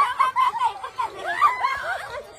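Several people laughing hard together, their high-pitched voices overlapping.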